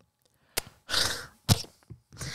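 A person's short breathy sigh into a close microphone, with a sharp click just before it and another about a second in.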